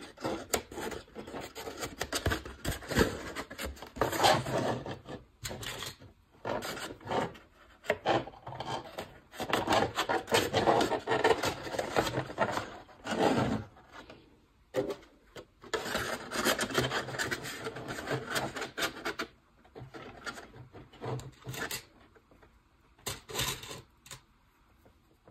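Paper plates rustling and scraping against each other as they are handled and clipped together with paper clips, in irregular bursts with a few short pauses.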